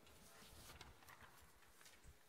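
Near silence: the room tone of a hall, with a few faint scattered clicks and taps.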